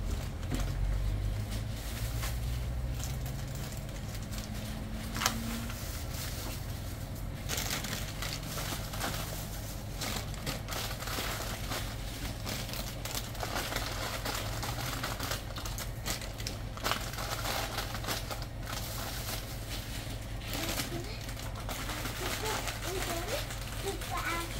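Plastic snack wrappers crinkling and rustling as packets are handled and taken off shop shelves, in scattered short crackles over a steady low hum.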